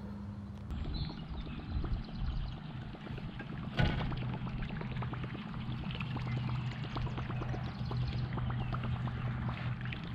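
A topwater musky lure being retrieved across calm water, churning with a dense run of small splashy ticks, with a sharper splash about four seconds in. A steady low hum runs underneath.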